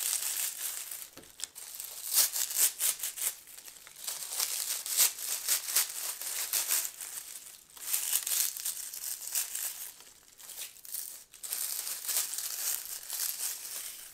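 Dried mint leaves crackling and crinkling as a hand strips them off their brittle stems, in repeated strokes with a few short pauses.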